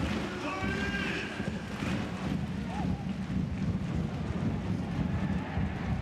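Steady crowd noise in a football stadium, with a few faint distant shouts.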